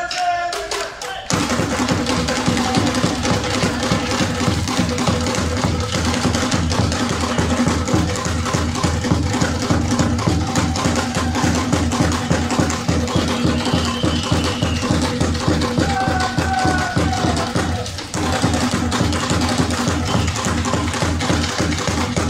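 Traditional Mozambican hand drums played live by an ensemble in a fast, dense, driving rhythm. The drums come in about a second in, just as a short sung chant ends, and pause briefly a few seconds before the end before carrying on.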